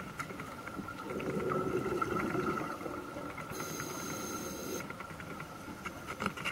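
Underwater ambience picked up by a camera in its housing: a diver's scuba exhalation bubbling, swelling about a second in and lasting a couple of seconds, over a steady faint high whine. A brief faint high hiss comes around the middle.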